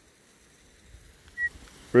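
Quiet hillside air, broken by one brief high whistle note about one and a half seconds in, then a man's loud shout of a sheepdog's name right at the end.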